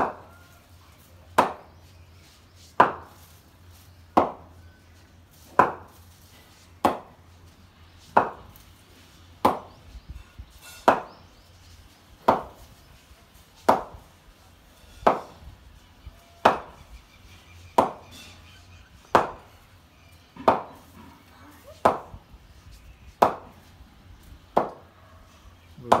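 A wooden cricket bat repeatedly striking a hanging practice ball: sharp, evenly paced knocks, one about every second and a half, each with a short ring.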